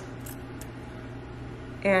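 Scissors snipping through T-shirt fabric: two faint snips in the first second over a steady low hum, before a woman's voice resumes near the end.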